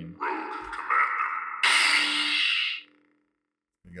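Proffie-driven lightsaber sound font played through the hilt's 28mm Smuggler's Outpost Elite speaker as the blade changes to a new blue unstable preset: a hissing effect, then a louder crackling burst about halfway through over a low hum, which cuts off near the three-quarter mark.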